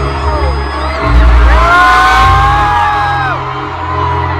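Loud stadium concert sound from the stands: PA music with heavy, steady bass, and the crowd cheering, with long high screams that rise, hold and fall in the middle.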